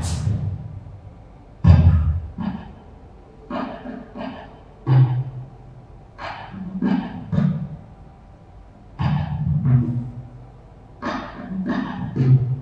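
A man's voice making short, deep sounds that are not words, about a dozen of them at irregular intervals with pauses between, in a reverberant room.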